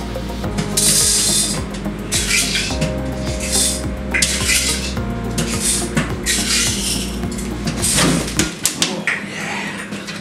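Dry popcorn kernels rattling against glass as they are scooped and measured in a glass jar, in bursts about once a second. A steady low hum runs underneath and stops abruptly about eight and a half seconds in.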